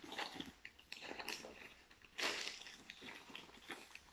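A brown paper bag stuffed with crumpled newspaper rustling and crinkling as it is squeezed and shaped by hand, with a louder crinkle about two seconds in.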